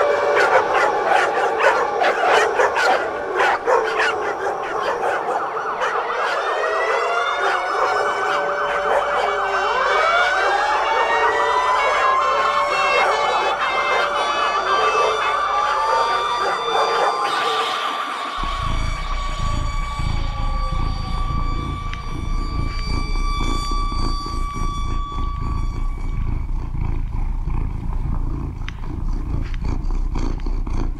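Many layered held tones that sweep up and down in pitch, siren-like. About two-thirds of the way through, a steady low rumble comes in beneath long, unchanging high tones.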